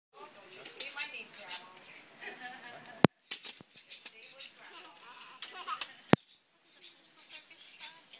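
Indistinct voices in a small room, with two sharp clicks about three seconds apart that are the loudest sounds.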